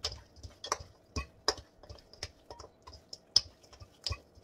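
Hands mixing food in a hammered metal colander: an irregular run of light clicks and taps, about a dozen, as the food and fingers knock against the metal. The loudest tap comes about three and a half seconds in.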